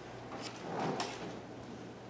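Handling noises: a soft rustle with a few light knocks, loudest about a second in, as things are picked up and moved about.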